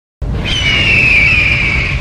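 Logo intro sound effect starting suddenly: a deep rumble with a high screech over it that falls slowly in pitch.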